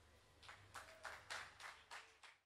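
Near silence, then from about half a second in a quick, uneven run of faint, sharp taps, roughly three or four a second.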